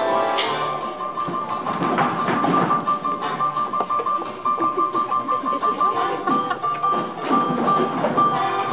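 Music with a steady beat, a bright high note pulsing evenly through it.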